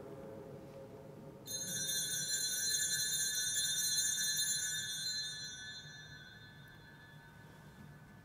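Altar bell rung at the elevation of the consecrated host: a clear ringing that starts about a second and a half in and fades out over the next few seconds.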